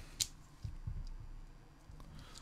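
Small plastic parts being handled as a receiver antenna is pushed into a 3D-printed mount on a drone frame: one sharp click near the start, then a few faint soft knocks.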